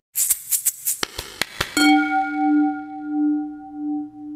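A short intro jingle. It opens with a quick run of rattling clicks, then about two seconds in a single bell-like tone strikes and rings on with a slow waver.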